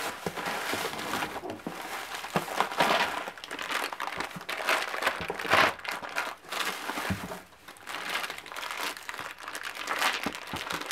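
Shredded paper packing filler rustling and crinkling as hands dig through it in a cardboard box, in irregular bursts, loudest about three and five and a half seconds in.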